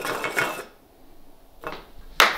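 Light clicking and clinking of small hardware handled by hand on a tabletop, quick and dense for about half a second, then nearly still apart from one short scrape near the end.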